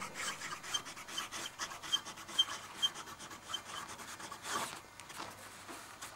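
Broad nib of a Montblanc Meisterstück 144 fountain pen scratching across paper in short, irregular strokes as cursive letters are written.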